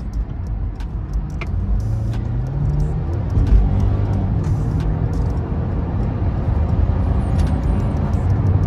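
Mercedes-Benz SUV engine accelerating hard in Sport Plus mode, heard from inside the cabin. The engine note climbs, breaks at a gear change about three and a half seconds in, climbs again and then holds, with road noise growing louder.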